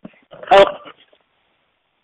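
A single short spoken "Oh" about half a second in, then dead silence on a video-call line whose presenter audio has dropped out.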